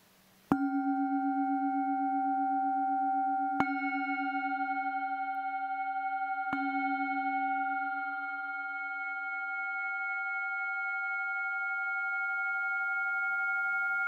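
Singing bowls struck three times, about three seconds apart, each strike joining a long ringing tone made of several pitches; the lowest tone pulses steadily and the ringing slowly fades.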